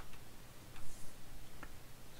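A few faint, separate clicks from a computer mouse at a workstation, spread over about a second, over a low background hum.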